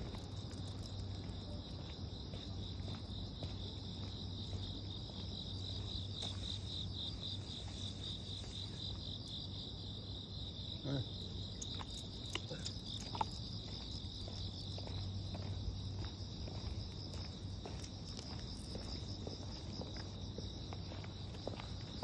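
Insects singing in a steady, high-pitched chorus that wavers for a few seconds, over a low steady hum, with a few faint light clicks.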